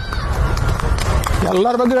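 Wind buffeting the microphone outdoors, a loud irregular low rumble, then a man's voice starts speaking about one and a half seconds in.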